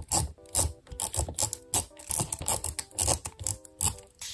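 Handheld tape roller being drawn back and forth across paper in quick repeated strokes, its wheel and gears clicking and rasping with each pass, about three strokes a second.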